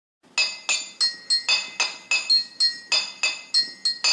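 A quick run of about a dozen glassy clinks, roughly three a second, each ringing briefly on a high bright tone before the next.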